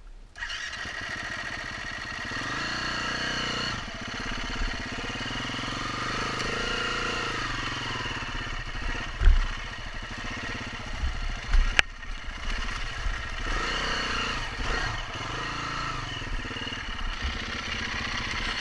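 2016 KTM 350 EXC-F single-cylinder four-stroke dirt-bike engine starting about half a second in, then running and revving up and down as the bike works through deep mud. A few sharp knocks are heard, the loudest about nine seconds in.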